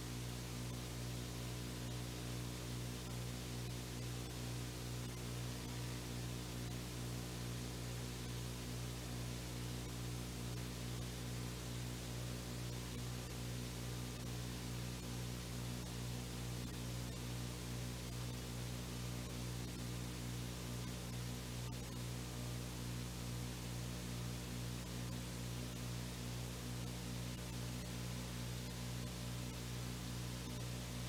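Steady electrical mains hum with hiss and no other sound: the broadcast's sound feed has dropped out, leaving only the buzz on the line.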